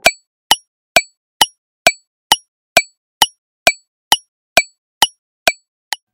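Countdown timer sound effect: a sharp clock-like tick repeated evenly, about two ticks a second, with silence between, the last tick fainter.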